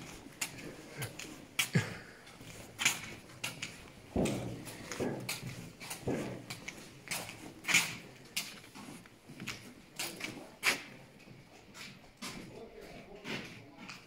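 Footsteps on a concrete tunnel floor, a step about every second, with irregular sharp scuffs and knocks among them.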